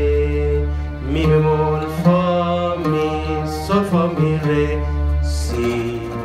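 A man singing a slow, drawn-out Arabic melody in a maqam, holding long notes, over sustained low bass notes and chords from a Yamaha A2000 oriental keyboard.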